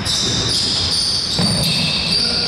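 Basketball game play on a hardwood gym court: sneakers squeaking in short high chirps as players run and cut.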